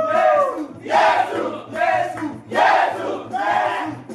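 A group of children chanting loudly together in worship, shouting one short phrase after another about once a second.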